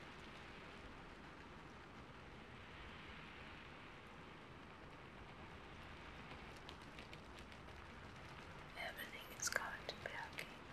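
A faint steady hiss, with a few faint clicks, then a woman's soft whispering near the end.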